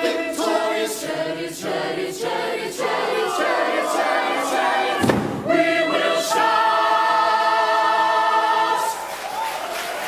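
Large mixed choir singing. There is a thump about five seconds in, then the choir holds one long chord that breaks off shortly before the end.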